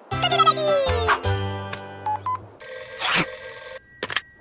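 Cartoon background music with a falling sliding note in the first second, then a telephone ringing for about a second near the end.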